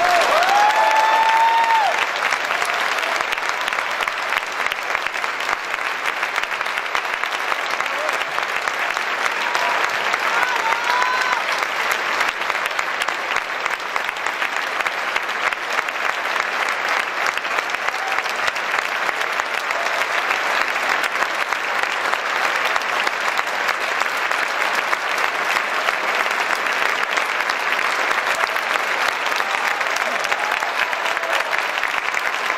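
Concert hall audience applauding steadily at the end of an orchestral performance. A few voices shout out near the start and again about ten seconds in.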